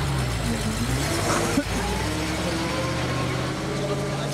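Truck engine idling steadily, a low even hum, from a utility truck fitted with an aerial lift boom.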